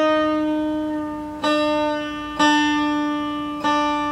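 Lowden F-22 acoustic guitar's top string plucked and left ringing while it is loosened from E down to D for DADGAD tuning. The single open note is struck again three times, about a second apart, each time decaying slowly.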